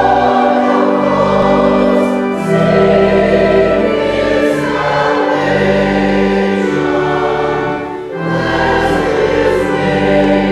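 A church choir singing with instrumental accompaniment in held, sustained chords that change every second or so. There is a brief breath between phrases about eight seconds in.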